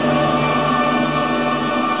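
Classical music with choir and orchestra holding sustained chords, a new chord coming in just as it begins.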